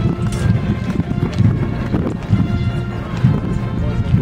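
Marching police band playing in the procession: brass holding sustained notes over drums.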